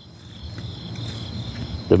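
Crickets chirping in a steady, high, even trill.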